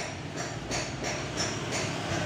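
Street background noise: a steady low hum of nearby traffic.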